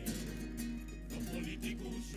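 A carnival coro's plucked-string band of guitars, bandurrias and lutes playing strummed and plucked chords together.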